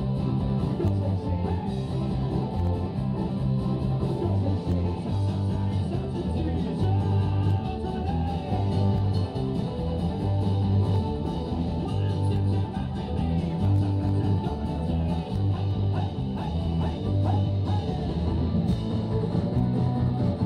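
Live band playing amplified music with guitars over a strong, steadily moving bass line, recorded from inside the crowd.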